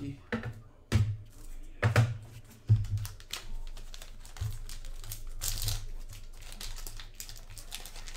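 A few sharp knocks as the cards are handled on the table, then the steady crinkling of a foil trading-card pack wrapper being torn open, brightest about five and a half seconds in.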